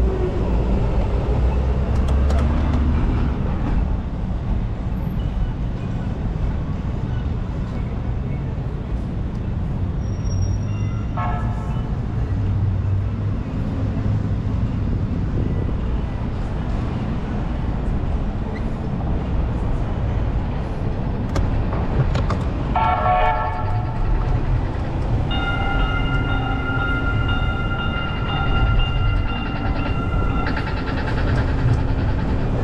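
A rail train rumbling past in street traffic, its horn sounding briefly about 11 seconds in and again about 23 seconds in, then a held chord-like tone near the end.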